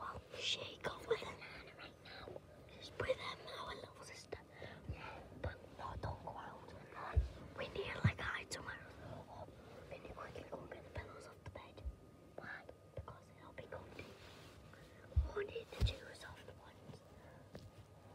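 A person whispering quietly, on and off, with a few soft low thumps around the middle and near the end.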